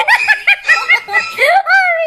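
Very high-pitched, cartoonish laughter: quick ha-ha pulses about five a second, then one long drawn-out note that bends up and down near the end.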